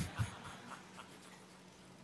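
Quiet pause: faint room tone with a steady low hum, and a couple of soft taps in the first half-second.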